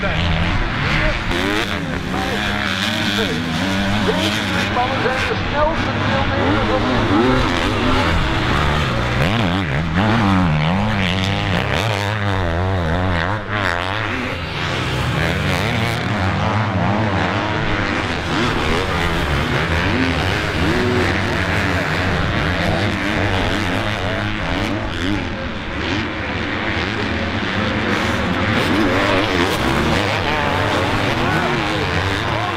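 Several MX2 motocross bikes racing, their engines revving up and down, the pitch rising and falling as they accelerate and shift through the turns.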